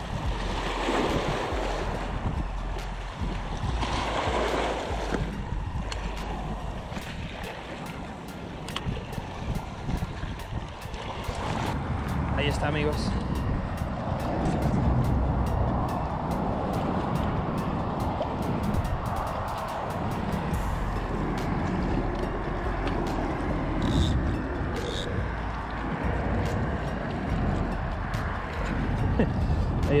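Wind buffeting the microphone and small waves washing against a rocky shoreline, with a string of light ticks through the middle.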